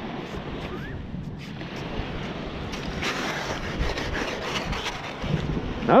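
Steady rushing noise of wind and surf, a little louder about halfway through.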